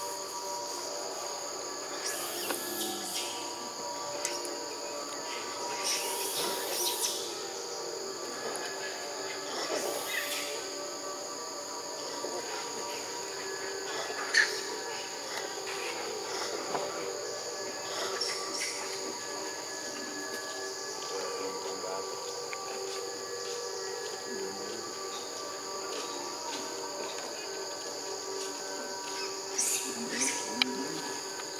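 Steady high-pitched insect drone in two close bands, running without a break. A few brief rustling bursts come through, and there is one sharp click about halfway.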